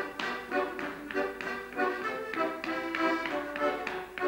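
Piano accordion playing a lively dance tune, with a step dancer's shoes tapping out a rhythm on a hard floor.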